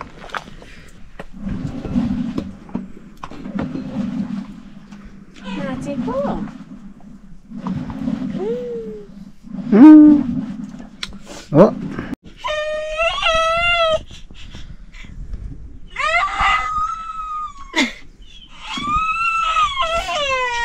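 A toddler whining and crying in high, wavering, drawn-out calls, three of them in the second half. Before that, low murmuring voices come in short spells about every two seconds.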